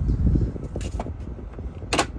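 Toyota HiAce's 2.8-litre turbo-diesel idling, under a low rumble of handling noise in the first half second. A few light clicks follow, then one sharp click near the end.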